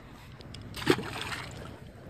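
A single short splash in pond water about a second in, over a faint background of wind and water.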